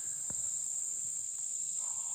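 Steady, high-pitched insect chorus, a constant shrill drone from field insects such as crickets.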